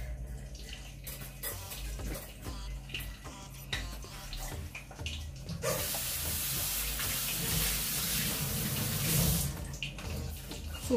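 A kitchen tap running into a steel sink for about four seconds, starting a little past the middle and shutting off just before the end, with small clicks before it.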